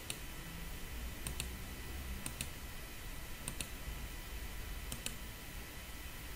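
Computer mouse clicking five times, each click a quick pair of sharp ticks, roughly a second apart, over a faint steady hum.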